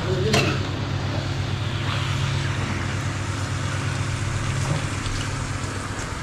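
Chicken pieces frying in a pan, a steady sizzle over a low steady hum, with one sharp knock about a third of a second in.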